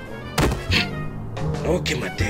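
A single dull thunk, a cartoon impact sound effect, about half a second in, over background music, with a voice speaking near the end.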